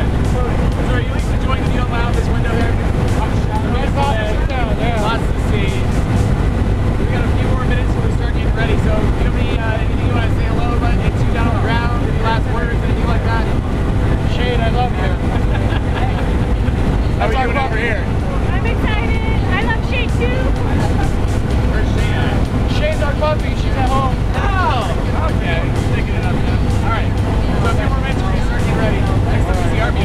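Steady, loud drone of a small skydiving airplane's engine heard from inside the cabin during the climb, with voices talking and laughing over it.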